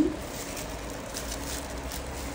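Faint rustling and handling noises from a clear plastic food-preparation glove as a hand works rice-flour dough, over a faint steady hum.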